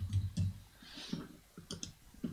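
Computer keyboard typing: a few soft key clicks, with a couple of sharper clicks near the end.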